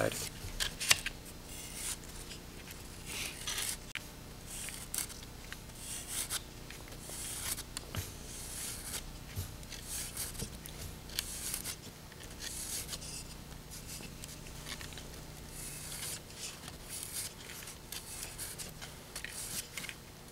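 Medium-grit sandpaper rubbed by hand along the tip of a small wooden dowel: a long run of short, scratchy sanding strokes, rounding the dowel's end.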